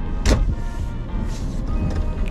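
Cabin noise of a moving car, a low rumble, with one brief sharp noise about a third of a second in.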